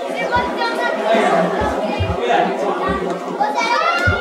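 Crowd chatter in a large hall, with children's voices and a few short low thumps.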